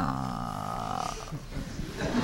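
A woman's long, drawn-out hesitant hum into a microphone as she searches for an answer. It starts with a falling pitch, is held for about a second, then trails off.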